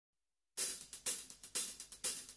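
Drum-kit hi-hat or cymbal struck about seven times in an uneven pattern, each stroke ringing briefly, after half a second of silence: the opening of a melodic rock track.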